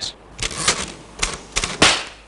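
A series of about six sharp, irregular clacking strikes in under two seconds, the last one loudest.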